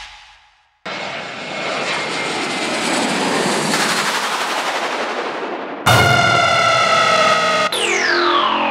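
Jet airliner sound effect. After a brief silence a roar builds steadily, then about six seconds in it gives way to a steady high turbine whine that begins to wind down in pitch just before the end.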